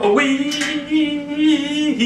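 A person's voice singing a long "weee": it slides up at the start, holds one steady note for almost two seconds, then breaks off into another held note.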